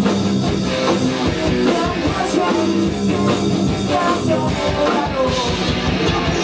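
Live rock band playing: electric guitars and drum kit going steadily together.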